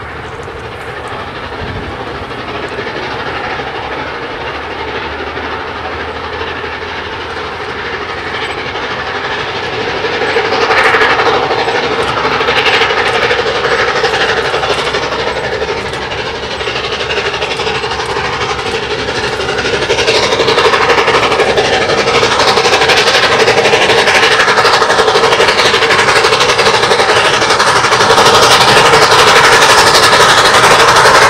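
LNER A4 Pacific steam locomotive 'Bittern' working hard up a 1 in 50 gradient: its rapid, steady exhaust beat grows louder as the train approaches, loudest near the end.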